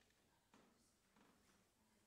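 Near silence: faint room tone with a couple of very quiet soft knocks.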